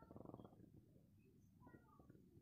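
Faint, rapid bubbling of water at a rolling boil in a wok, busiest in the first half-second and then dying down to a low patter.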